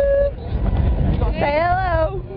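A person's voice making drawn-out vocal sounds, not words: one held note at the very start and a longer rising-and-falling one near the end, over a steady low rumble.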